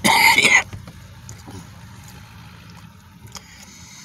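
A man clears his throat once, briefly, right at the start, followed by a steady low hum of the vehicle cabin.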